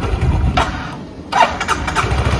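Low rumble of a moving motor scooter, its engine and wind on the microphone, dipping in level about a second in. A brief voice-like sound comes near the end.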